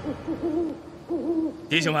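An owl hooting, a series of short hoots in quick succession. A man's voice starts near the end.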